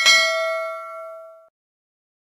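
Notification-bell "ding" sound effect from a subscribe-button animation: one bright bell strike ringing with several tones, fading, then cut off about one and a half seconds in.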